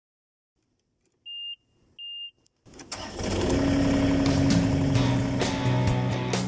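Intro sound effects and music: two short high beeps, then an engine starting and running as rock music comes in, with a steady beat of about two hits a second near the end.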